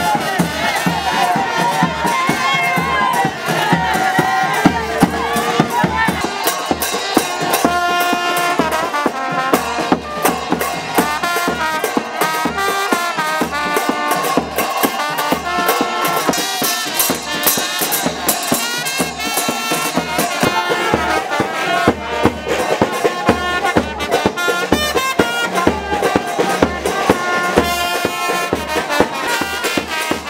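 Brass band music with a steady drum beat, over the noise of a crowd.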